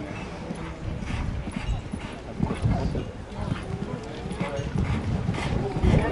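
Hoofbeats of a cantering show-jumping horse on sand footing, a run of dull thuds.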